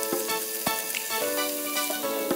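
Pork chunks sizzling steadily as they sear in oil in a nonstick frying pan, under background music.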